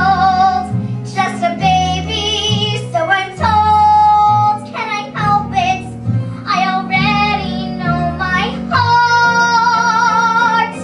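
A ten-year-old girl singing a show tune over instrumental accompaniment, holding long notes with vibrato about four seconds in and again near the end.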